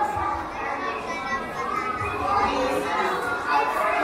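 A crowd of children chattering and talking over one another, with no single voice standing out.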